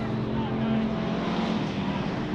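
Hobby stock race cars' engines running as the cars race around a dusty dirt oval, a steady drone with no break.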